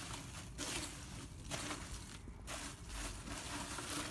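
A gloved hand stirring through charcoal ash and burnt charcoal pieces in a metal grill tray, rustling and scraping in several short strokes.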